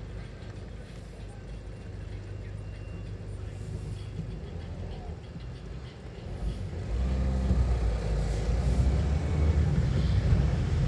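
Car engine heard from inside the cabin, idling in stationary traffic, then pulling away about seven seconds in, when the hum becomes louder and deeper.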